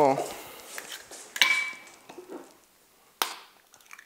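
Eggs being cracked open with a kitchen knife: two sharp cracks, the first about one and a half seconds in with a short ringing tone after it, the second about three seconds in.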